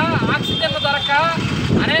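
A man speaking in Telugu, with a steady low rumble behind the voice.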